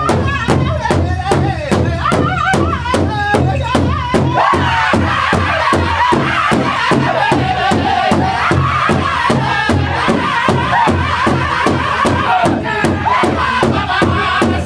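Powwow drum group: several men beating one large shared drum in a steady even beat, about three strokes a second, while singing together in a wavering, chant-like song.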